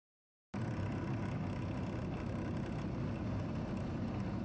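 Steady engine and running noise of an armoured vehicle driving, heard from on board, cutting in suddenly about half a second in.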